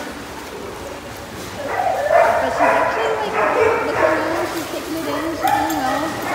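Dog yipping and whining in a run of high, wavering calls that starts about two seconds in.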